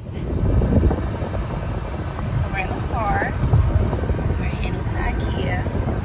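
Steady low rumble of a car heard from inside its cabin, with a few brief snatches of talk.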